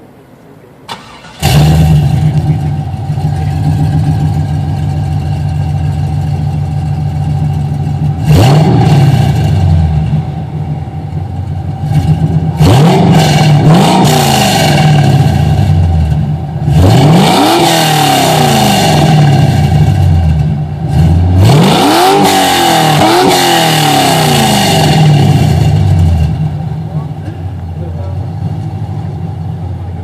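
1999 Pontiac Trans Am's LS1 V8, fitted with headers and TSP true dual exhaust with bullet mufflers, starting up about a second and a half in and settling into an idle. It is revved in four bursts, some with quick double blips, falling back to idle between them and after the last one.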